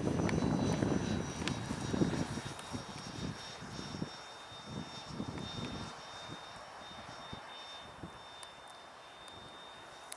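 An 80 mm electric ducted fan in an RC L-39 jet model in flight: a steady high whine made of two tones, over a low rumble that is loudest in the first couple of seconds. The sound gradually fades as the jet flies farther off.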